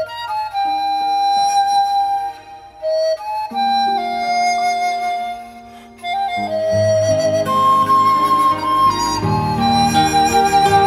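Chinese bamboo flute (dizi) playing a slow melody of held notes with vibrato, over an accompaniment of sustained low notes that grows fuller about six and a half seconds in.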